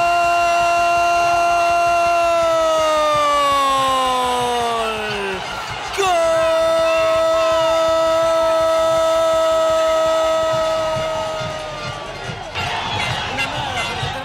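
Spanish-language football commentator's long drawn-out "goool" cry for a goal. One held note lasts about five seconds and falls in pitch as it ends, and a second long held cry follows for about six seconds. Crowd noise is heard near the end.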